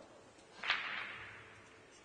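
Pool balls knocking together in one sharp clack, with a rattle that dies away over about a second as they are gathered off the table.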